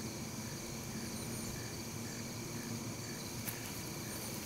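Steady chorus of crickets and other insects, with a pulsing trill repeating about twice a second.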